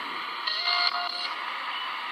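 Spirit box sweeping through radio stations: a steady hiss of radio static, with a brief snatch of tonal radio sound about half a second in that lasts under a second.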